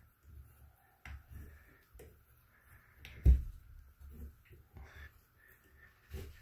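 Shut-off valves on a water manifold being turned by hand: faint handling noises and small clicks, with one sharp click a little over three seconds in.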